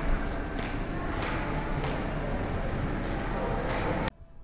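Shopping-centre concourse ambience: a steady wash of indistinct voices and echoing hall noise, with a few light, fairly regular footsteps.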